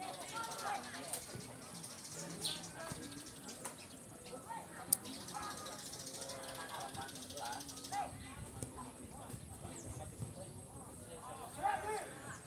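Players and onlookers on a football pitch shouting and calling out, heard at a distance over a steady hiss. One sharp knock stands out about five seconds in.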